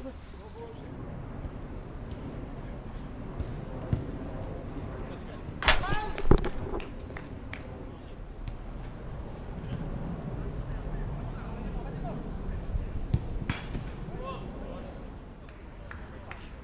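Small-sided football game: a player's loud shout and sharp ball-kick thuds about six seconds in. A few more kicks and distant calls follow over steady background noise.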